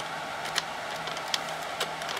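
A few single key clicks on an IBM computer keyboard, about half a second in, near one and a half seconds and near the end, over the steady hum of running computer equipment.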